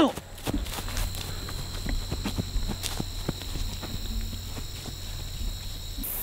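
Footsteps of a person running over grass and dirt: a string of irregular soft impacts, with a faint steady high-pitched whine behind them.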